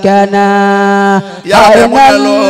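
A man chanting into a microphone: one long, steady held note, then a dip and a new phrase with a wavering pitch starting about a second and a half in.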